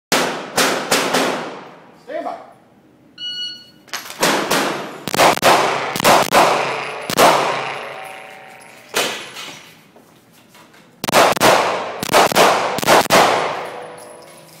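Handgun shots fired in quick groups, about twenty in all, each a sharp crack with a ringing tail off the concrete-block walls of an indoor range, with a lull of a few seconds in the middle. A short electronic beep sounds about three seconds in.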